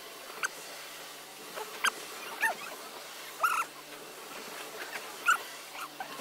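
A small bird chirping: about five short, high chirps at irregular intervals, some rising and falling or sliding down in pitch, over a quiet background.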